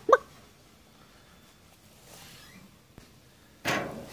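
A brief hiccup-like voice sound at the very start, then low outdoor quiet with a click, and a short loud rustling noise near the end from handling at the propane grill. No sizzle is heard from the grate.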